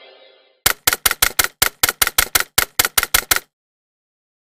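Closing music fading out, then a quick run of about fourteen sharp clicks over nearly three seconds.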